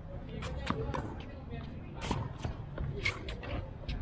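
Tennis ball strikes and bounces during a rally on a hard court: a series of sharp pops from the ball on racket strings and court, the loudest about two seconds in.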